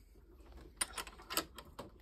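A few light metallic clicks from handling a Stanley multi-angle vice as its ball-joint clamp screw is worked and the head is moved.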